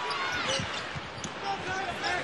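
Live game sound on a hardwood basketball court in a large arena: a ball bouncing and sneakers squeaking on the floor over crowd noise.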